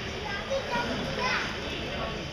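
Children's voices and chatter, with a brief rising high-pitched call about a second and a quarter in.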